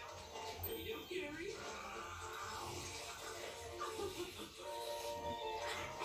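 Faint background voices and music, as from a television playing in the room.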